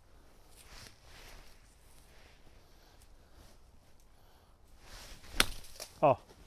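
A golf iron striking the ball once: a single sharp, crisp click about five and a half seconds in. Before it there is only faint rustling.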